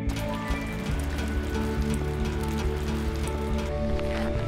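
Background music with long held notes, over rain falling, its many small drops making a dense ticking.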